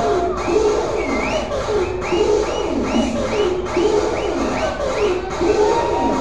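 Electronic dance music from a live set: a repeating synth figure of short high notes that bend upward, about two a second, over a looping, swooping lower riff.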